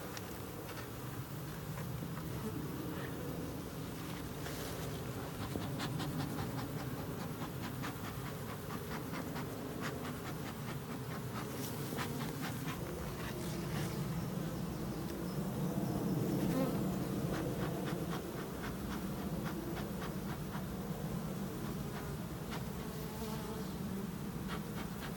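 A mass of honeybees buzzing in a steady low hum over an opened nucleus hive, swelling slightly part way through, with scattered faint clicks.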